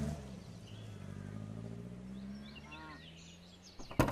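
Car engine running steadily and fading away as the car drives off. Birds chirp briefly about two-thirds of the way in.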